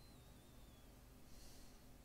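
Near silence: faint room tone with a low steady hum, and a faint wavering high whine during the first second.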